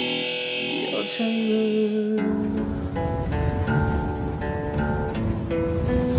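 Guitar music: a chord from acoustic and electric guitars rings on, then about two seconds in it switches abruptly to single picked notes stepping through a melody over a steady low rumble of noise.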